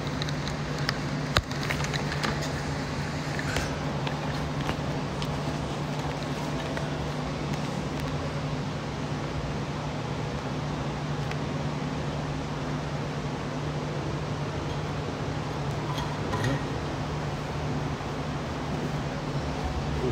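Steady mechanical hum of building ventilation, fans or air conditioning, with one sharp knock about a second and a half in and a few faint clicks.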